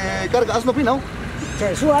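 A man's voice talking, not picked up by the transcript, over a steady low rumble of street traffic.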